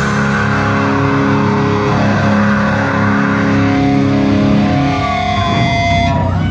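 Distorted electric guitars of a live death metal band letting a chord ring out at the end of a song, the drums having stopped; the held notes break off about five and a half seconds in.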